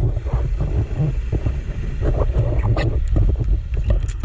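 Underwater sound picked up through a diver's camera housing: a constant low rumble with bursts of bubbling crackle and scattered clicks, typical of a diver's exhaled bubbles and water moving over the housing.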